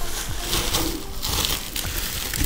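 Plastic bubble wrap rustling and crinkling as it is grabbed and pulled out of a plastic tub by hand, a dense run of small crackles.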